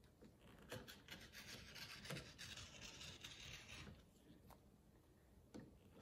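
Faint rotary cutter rolling through fabric on a cutting mat, a soft scraping rub with small ticks, stopping about four seconds in; the blade is dulled from cutting paper.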